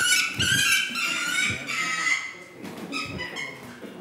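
A falcon on a gloved hand giving a string of shrill, high-pitched calls while it flaps its wings, with a few soft thumps from the wingbeats; the calls break off about two seconds in and come again briefly near three seconds.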